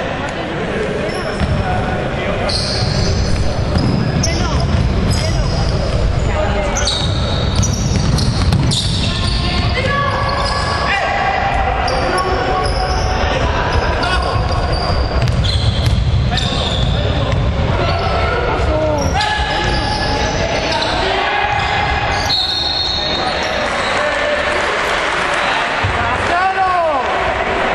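Basketball game sounds in a large hall: the ball bouncing on the hardwood court and players' shoes giving many short, high squeaks, with voices calling out.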